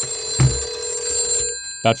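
Rotary telephone's bell ringing on an incoming call, stopping suddenly about one and a half seconds in. A single thump sounds about half a second in.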